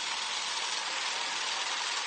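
A steady, even hiss with no tone or beat in it: the noise tail of the programme's brass intro jingle, left hanging after the band drops out.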